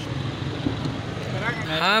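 Steady low rumble of a car engine idling amid street traffic noise.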